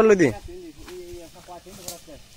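A man's loud, drawn-out voice cuts off a moment in, and fainter voice sounds follow. Near the end comes a single sharp knock of a blade striking the tree trunk.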